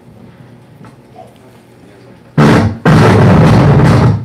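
Two loud bursts of noise right on a headset microphone while it is being handled and tested after cutting out: a short one past the middle, then a longer one lasting about a second near the end.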